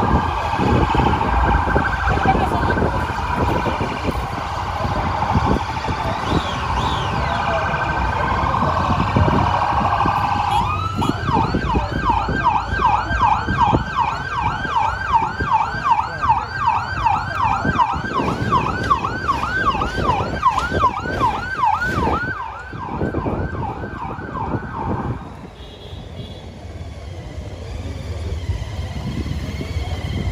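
An emergency-vehicle siren wails. About ten seconds in it switches to a fast yelp, rising and falling about three times a second, and it stops suddenly about 25 seconds in.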